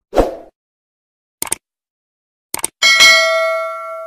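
Subscribe-button animation sound effects: a short pop, two quick double clicks, then a bell ding that rings out and slowly fades.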